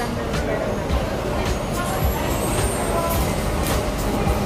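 Busy restaurant dining-room ambience: a steady din of background music and indistinct chatter, with a few sharp clinks of tableware.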